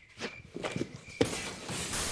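A few quick irregular thuds and shuffles of a person scrambling away, then, a little past halfway, a loud hiss of TV static that runs on to the end.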